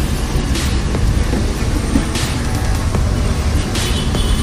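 Steady low rumble of street traffic with music playing, and a few short hisses about every second and a half.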